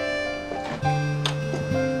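Soft background music of held instrumental notes that change pitch every half second or so.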